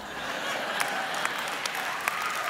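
Congregation applauding, a steady patter of many hands clapping that builds in over the first half second.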